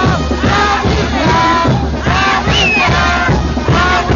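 Dense crowd shouting and yelling over loud band music with a steady low bass, one voice rising sharply in pitch about two and a half seconds in.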